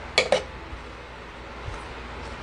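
Wooden spatula stirring stir-fried octopus in an electric cooking pot: two quick knocks against the pot about a quarter second in, then a steady low background noise.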